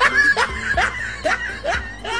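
Laughter: a rhythmic run of about five short 'ha's, each falling in pitch, roughly two a second, with music under it.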